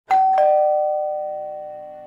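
Two-note ding-dong doorbell chime: a higher note, then a lower one about a third of a second later, both ringing on and fading away slowly.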